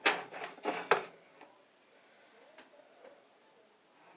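A knife sawing through a warm loaf of homemade white bread and its crust, with several rasping strokes in the first second, then quiet.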